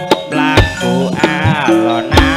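Javanese gamelan music for tayub: steady ringing metallophone tones under sharp kendang drum strokes. A singer's voice wavers on long held notes from about half a second in until near the end.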